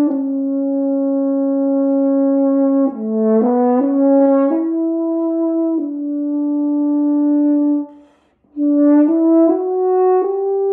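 Solo French horn playing a slow melody of long held notes, with a quicker run of note changes about three seconds in. There is a short break near the eight-second mark, and then the line climbs in steps.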